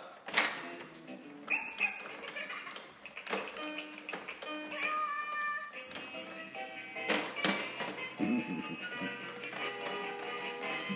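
Baby's electronic activity-table toy playing a tune, with clicks from its plastic buttons being pressed.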